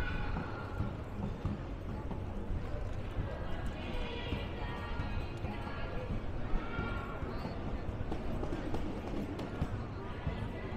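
Busy pedestrian-street ambience: passers-by talking, steady walking footsteps, and music with drawn-out notes coming and going every few seconds.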